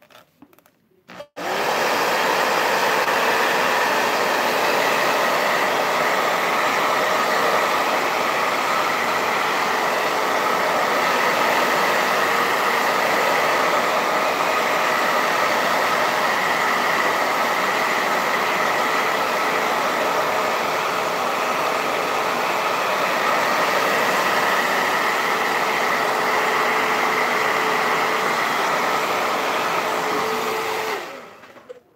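Hand-held hair dryer switched on about a second and a half in and running steadily, a constant rush of blowing air with a steady hum under it, drying freshly glued decoupage paper.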